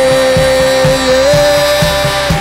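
Live worship band with electric guitar and drums playing between sung lines. One long held note steps up slightly about halfway through, over a steady drum beat.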